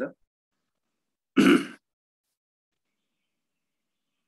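A man clears his throat once, sharply and loudly, about a second and a half in.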